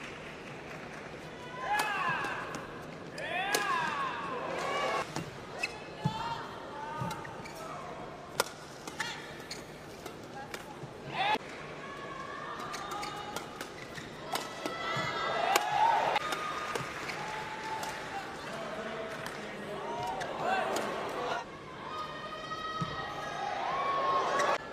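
Badminton rallies in an indoor arena: sharp strikes of rackets on the shuttlecock and players' footwork on the court mat, scattered irregularly through the rallies.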